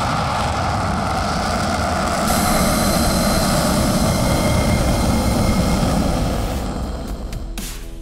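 F-16 fighter's Pratt & Whitney F100 turbofan running with its afterburner lit: a loud, steady jet roar. It grows louder about two seconds in and fades away near the end.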